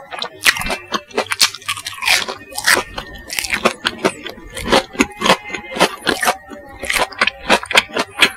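Close-miked chewing of crispy bubble-crumb coated Kanzler chicken nuggets: a dense, irregular run of crunches, several a second, as the crumb coating breaks between the teeth.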